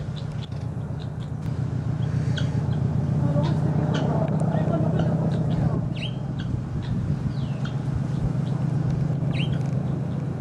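A steady low mechanical drone, like a motor vehicle running, swelling a little in the middle, with scattered short chirps and a few gliding whistles from small birds.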